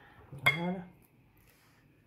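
A single sharp clink against a glass mixing bowl about half a second in, as food is handled in it.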